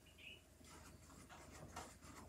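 Faint, scratchy strokes of a paintbrush picking up acrylic paint from a plastic palette plate and brushing it onto canvas, starting about half a second in.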